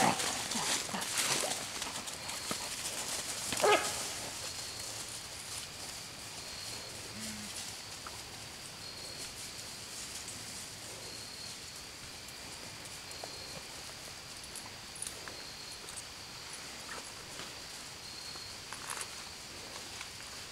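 Coon-hunting hounds just turned loose, giving a single bark about four seconds in as they run off. After that only faint sound remains, with a high, broken tone repeating in the background.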